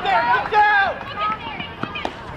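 Spectators shouting and cheering, several raised voices overlapping and loudest in the first second. A single short knock comes near the end.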